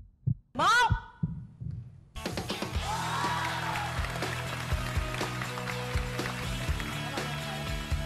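A low, heartbeat-like suspense thump, then about two seconds in loud upbeat game-show music starts with a steady beat. It is the show's cue that both contestants pressed their buttons, a match.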